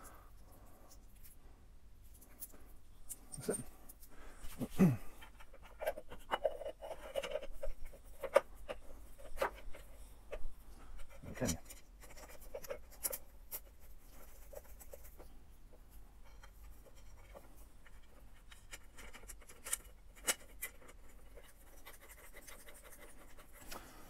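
Faint, scattered clicks and light scrapes of small metal bolts being handled and a tail-tidy bracket being fitted against a motorcycle's rear frame, busiest in the middle of the stretch.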